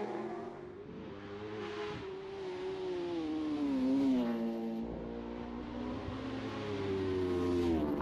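Superstock racing motorcycle engines at high revs, with no commentary over them. The engine note grows louder toward the middle, falls in pitch just after, and settles on a lower steady note before dipping again near the end.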